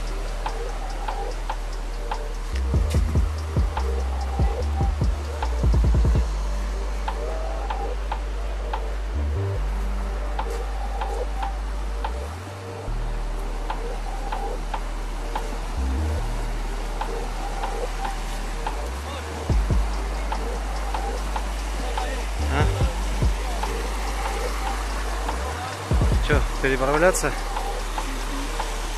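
Shallow stream water rushing over flat rock, with background music over it. Bursts of low rumble come and go throughout.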